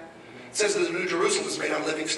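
A man speaking into a handheld microphone, starting about half a second in after a brief pause.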